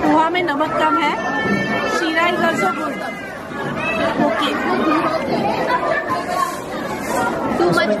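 A voice talking close by over the chatter of other people.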